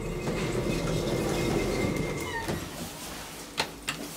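Schindler elevator's sliding car doors closing: a loud running rumble along their track, with a faint steady whine, that fades out about two and a half seconds in. Two sharp clicks follow near the end as a car call button is pressed.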